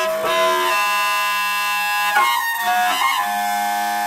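Clarinet and alto saxophone playing together, holding long sustained notes that shift to new pitches about two seconds in and again near three seconds.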